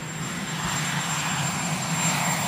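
Aircraft engine running steadily: a continuous drone with hiss, a little louder near the end.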